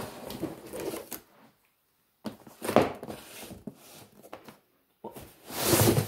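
Cardboard kit boxes sliding out of a cardboard shipping carton, scraping against it in three rubbing bursts with short pauses between.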